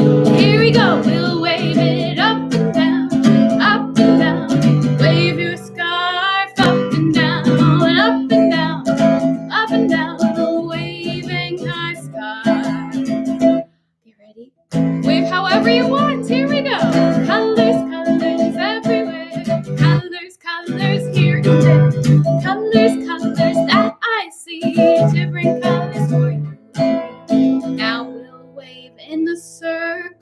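A woman singing along to her own strummed acoustic guitar, with a short break in the music about halfway through.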